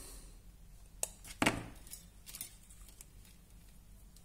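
Small side cutters snipping a resistor's wire leads: two sharp snips about a second and a second and a half in, then a few faint ticks of handling.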